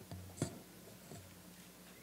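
Handling noise on a podium gooseneck microphone as a hand adjusts its stem: a low rumble with one sharp knock about half a second in.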